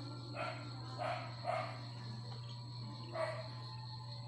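A dog barking four times, three barks close together in the first two seconds and one more about three seconds in, over a steady high trill of crickets.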